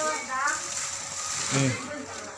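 Dry bamboo twigs rustling and scratching against the phone's microphone as the bundle is handled close up: a steady, rough, hiss-like crackle.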